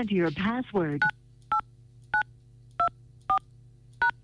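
Telephone keypad tones: five short two-tone DTMF beeps, about half a second apart, as a phone number is dialled to call back a dropped caller. A faint steady low hum runs underneath.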